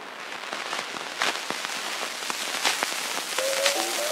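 Surface noise of a replica Berliner disc record being played: a steady hiss scattered with sharp clicks and pops. The first notes of the recorded music come in near the end.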